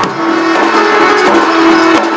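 Live Odia folk-dance music: a two-headed barrel drum (dhol) beating under a long held melodic note.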